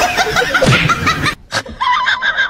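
Human laughter: a quick run of short, high-pitched snickers that cuts off sharply about two-thirds of the way in, with a different sound beginning just before the end.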